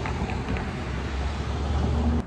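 Wind buffeting a phone's microphone, a steady low rumble, over the rush of street traffic.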